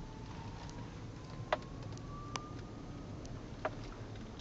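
Low steady rumble inside a car's cabin as it rolls slowly, with a faint thin tone slowly rising in pitch and a few scattered sharp clicks.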